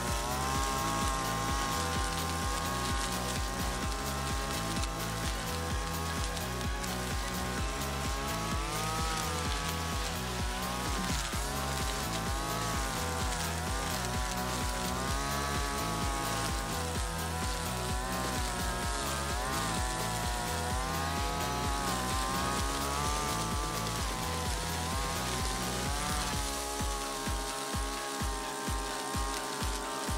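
Brush cutter engine running, its pitch rising and falling as the spinning cutting head chews into thick-stemmed weeds. Background music with a steady beat plays along with it.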